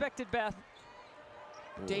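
A basketball dribbled on a hardwood court, a few quick bounces in the first half second, then only a faint steady background.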